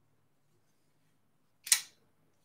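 Near silence with a faint low hum, broken near the end by one short hiss.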